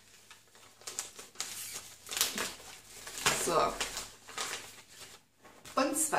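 A stapled paper envelope being pulled and torn open by hand: paper crinkling and ripping in a string of short rips over a few seconds.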